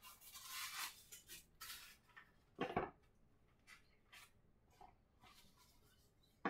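Faint handling of a small cardboard pipe box and its tissue wrapping: soft rustling for the first two seconds, a single brief bump about halfway through, then a few tiny clicks.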